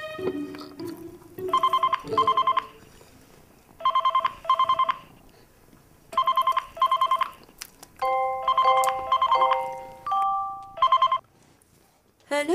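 A telephone ringing in pairs of trilled rings, about two and a half seconds apart: four double rings, then a fifth cut short after one ring as the phone is answered. A few soft, sustained music notes sound under the fourth ring.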